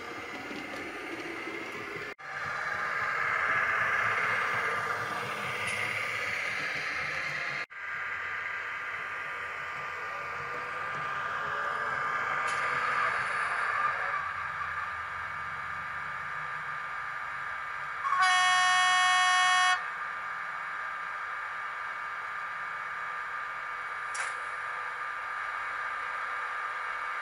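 Model V42 electric locomotive with a Digitools sound fitting, running with a steady electric whine over track rumble as it pulls into the station. About two-thirds of the way through it gives one loud horn blast of just under two seconds. A short click comes near the end.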